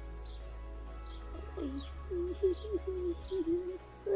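A pigeon cooing a phrase of five or six low notes, starting about one and a half seconds in, with a small bird chirping faintly and repeatedly in the background.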